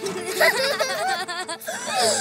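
Cartoon characters' wordless, excited voices and giggles over light background music.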